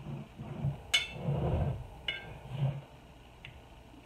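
A metal lid-opening tool clinking against a glass canning jar and its metal lid while the jar is handled. There is a sharp click about a second in, a second about two seconds in, and a faint tick later, with low bumps of the jar being moved.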